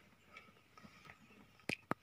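Mostly quiet room tone with two short, sharp clicks close together near the end.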